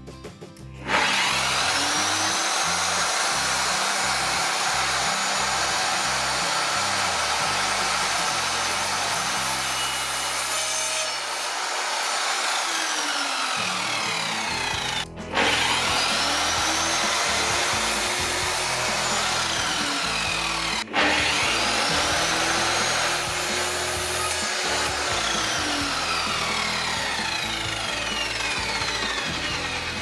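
Evolution R210 MTS mitre saw, its 1200 W motor and 210 mm multi-material blade, started about a second in with a rising whine and run through a cut in soft wood, cutting easily. The trigger is let go briefly twice, and each time the motor spins back up.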